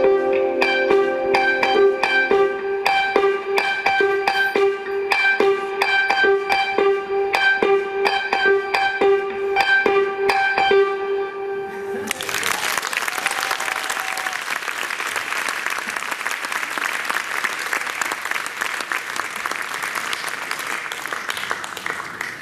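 Jazz quartet of electric guitar, keyboard, bass and drums playing the closing bars of a piece, a repeated figure over a steady beat that stops abruptly about halfway through. The audience then applauds.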